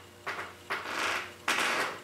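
Wool roving rustling as it is pulled taut and wrapped around a wool-covered wire armature, in a few short bursts.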